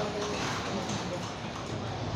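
Indistinct background voices over a steady murmur of room noise, with no clear single sound standing out.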